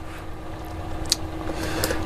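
Low, even indoor noise with a faint steady hum, growing slightly louder, and two light clicks, one about a second in and one near the end.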